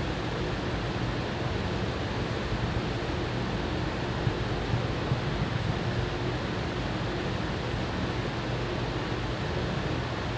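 Steady background hiss with a faint low hum and no speech: the room tone of the church sanctuary as picked up by the stream's audio.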